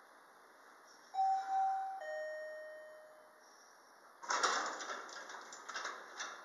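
Elevator arrival chime sounding two tones, a higher one and then a lower one that fades out. About four seconds in the elevator doors slide open with a rattling rumble.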